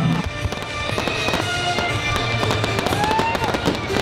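Fireworks going off: a rapid string of sharp cracks and pops, with music underneath.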